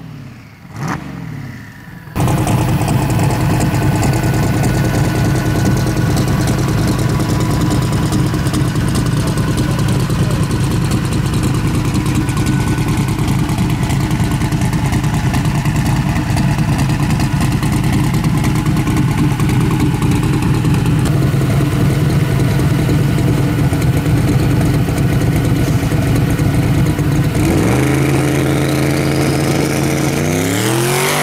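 Twin-turbo Chevrolet S-10 pickup's engine idling steadily at close range; it cuts in suddenly about two seconds in. Near the end it revs up, rising in pitch.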